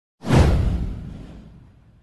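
Whoosh sound effect with a deep bass boom, starting suddenly a fraction of a second in and falling in pitch as it fades away over about a second and a half.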